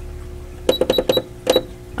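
Computerized Singer sewing machine's buttons being pressed: about five quick clicks, each with a short high beep, as the stitch length is stepped down from a long basting stitch to 3.0.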